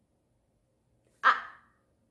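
A woman's voice saying a single short syllable, "I", about a second in, after a pause of near silence.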